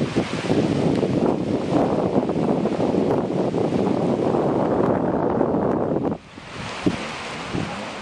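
Wind buffeting the microphone over small waves washing onto a sandy beach, fairly loud and unsteady. About six seconds in it drops suddenly to a quieter, steadier wash of surf.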